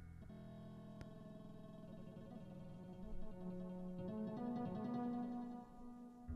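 Harp-sample notes from the PlantWave app, played from a plant's electrical activity as a slow single-note arpeggiated melody. The note rate follows the plant's activity level. It is quiet at first and louder from about three seconds in.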